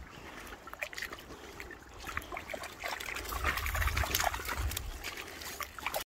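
Shallow river water splashing and trickling as a small sea trout thrashes at the edge. The splashes come thicker and louder from about halfway.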